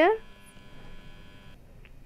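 A steady electrical hum with a high, buzzing stack of tones that cuts off suddenly about three-quarters of the way through.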